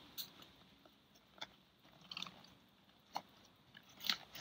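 Faint handling noise of backpack straps being pulled and fastened around a pair of hiking boots strapped to the outside of the pack: four short, soft clicks and rustles spread over otherwise near silence.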